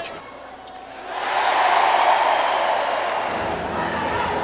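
Crowd in an indoor arena cheering, swelling about a second in from a lull and then staying loud.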